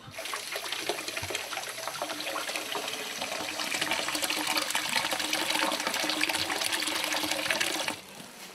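Water running from a pipe into a concrete wash basin, splashing over a hand held in the stream. It gets louder about halfway through.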